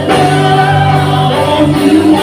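Live worship band playing a praise song: several voices singing into microphones over electric bass and keyboard.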